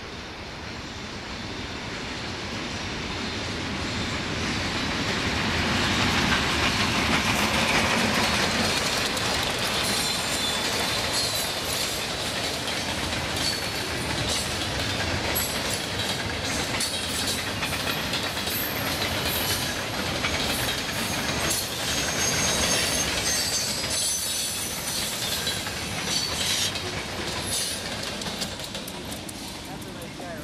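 A freight train led by GE diesel locomotives passing: the sound builds to its loudest about six to eight seconds in. The freight cars then roll by with quick clicks of the wheels over rail joints and high squealing from the wheels.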